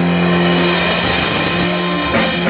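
Live rock band holding a sustained chord: electric guitar and bass ringing under a wash of drum cymbals.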